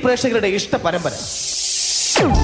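A voice speaks for about a second. Then a high hiss swells steadily louder and cuts off sharply at the end.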